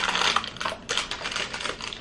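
Quick, irregular small clicks and rustles of backflow incense cones being handled and taken out of their packaging by hand.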